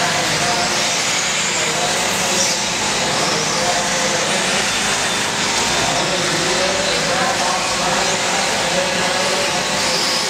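1/8-scale electric RC buggies racing on a dirt track: a steady, loud din of several electric motors whining up and down as they accelerate and slow, with indistinct voices mixed in.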